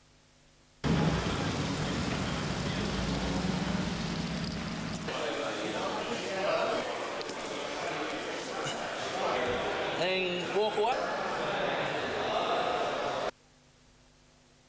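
People talking in a large garage, with a steady low rumble under the first few seconds. The sound starts abruptly about a second in and cuts off abruptly just before the end.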